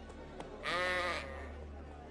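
A sheep bleats once, a wavering call about half a second long that starts just over half a second in.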